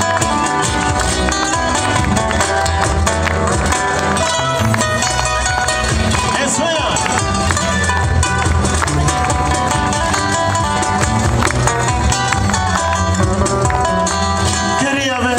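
Live band music from acoustic guitars over a steady low bass line, amplified through PA loudspeakers.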